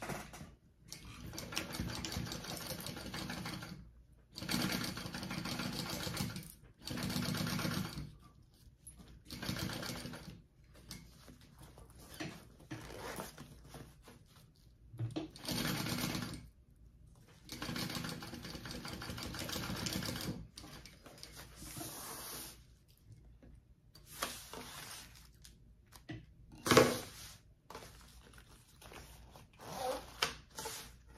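Kingmax GC0302 industrial sewing machine stitching in short runs of one to three seconds, stopping and starting as the layers are guided, while topstitching through the thick layers of a zipper panel. Late on, a single sharp knock is the loudest sound.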